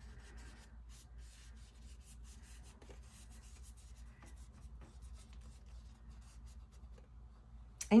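Wet paintbrush stroking paint onto journal paper: faint, short, scratchy brush strokes over a steady low hum.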